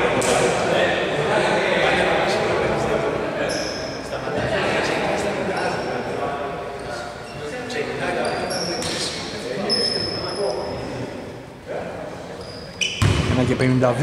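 Indistinct voices of people talking, echoing in a large indoor sports hall, with a few short high-pitched squeaks.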